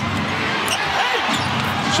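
Arena crowd noise during live basketball play, with short high sneaker squeaks on the hardwood court as players battle in the post.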